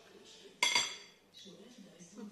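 A single ringing clink about half a second in, as metal cutlery strikes ceramic tableware, fading within half a second.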